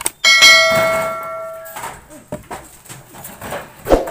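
A click followed by a bright bell-like ding, the loudest sound here, that rings for about a second and a half and then cuts off abruptly: the notification-bell sound effect of a subscribe-button animation. A single sharp thump near the end.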